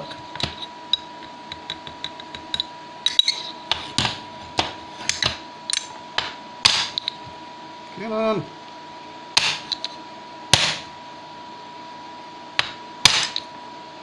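Graphite ingot mould with a stuck Rose's metal bar being knocked against a tile to free the ingot: an irregular run of sharp knocks, with a pause in the middle and a last loud pair near the end.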